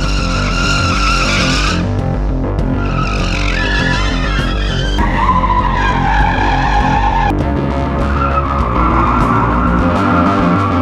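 Car tyres squealing in a series of long, wavering slides as cars are drifted around cones, the squeal breaking off and changing pitch at several points. Background music with a steady beat plays underneath.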